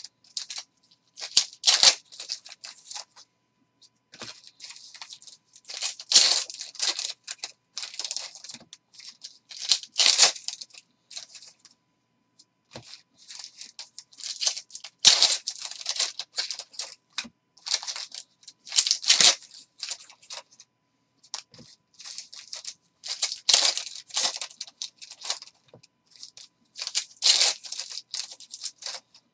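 Football card packs being torn open and handled: foil wrappers crinkling and tearing and cards sliding against each other, in repeated bursts with short pauses.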